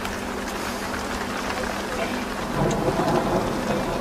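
Heavy rain falling on the roof and windows, a steady hiss with a faint low hum underneath.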